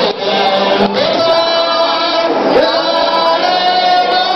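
A group of voices singing a song together, with a lead singer on a microphone, holding long notes.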